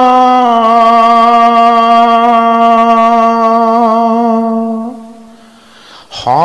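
A man's voice chanting a devotional invocation, holding one long note that steps slightly down in pitch about half a second in, then fades away around five seconds in.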